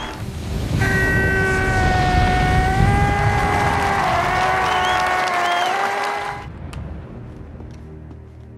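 Loud film soundtrack mix: a crowd clapping and cheering under music, with one long held note with strong overtones coming in about a second in. The held note and most of the noise cut off about six and a half seconds in.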